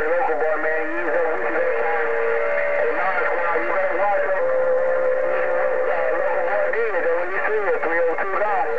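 Received audio from a President HR2510 radio on 27.085 MHz (CB channel 11): several distant stations' voices overlapping through the radio's speaker, thin and band-limited, with a steady whistle held through the middle few seconds.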